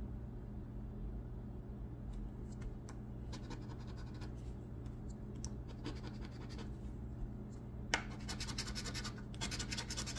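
A metal coin scraping the scratch-off coating on a paper lottery ticket: light, scattered strokes at first, then a fast run of louder rubbing strokes in the last couple of seconds, over a steady low hum.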